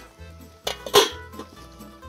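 A copper saucepan's lid being set onto the pan, with a short metallic clank about a second in, over background music.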